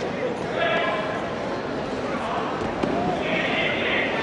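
Indistinct voices calling out and chattering, echoing in a large sports hall, with a few faint thumps.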